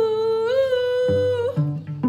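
A woman's voice holding one long wordless sung note that lifts slightly in pitch partway through and ends about a second and a half in. Pizzicato cello notes, plucked by the singer herself, come back in under it about a second in.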